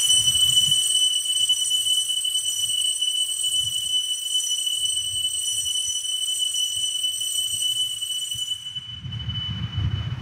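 Altar bell ringing for the elevation of the chalice at the consecration, a steady high ring that stops about nine seconds in.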